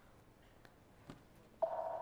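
Mobile phone electronic alert tone as a text message arrives: a steady, multi-pitched tone that starts abruptly about one and a half seconds in, after a couple of faint clicks.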